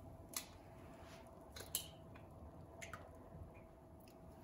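Faint clicks and soft squishy drips of a hen's egg being cracked and its white separated into a glass bowl of liquid, a few scattered taps over near-quiet room tone.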